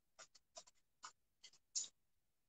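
Faint, short clicks and scratchy ticks, about seven at irregular intervals, the last one near the end slightly longer and louder.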